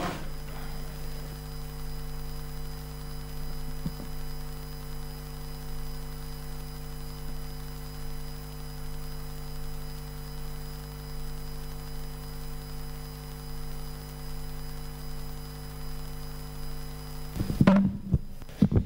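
Steady low electrical mains hum on the chamber's sound system, a buzz made of a few constant low tones. It stops abruptly near the end, where a few knocks follow.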